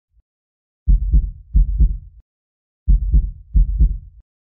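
Heartbeat sound effect: deep, paired lub-dub thumps, two double beats, a short pause, then two more.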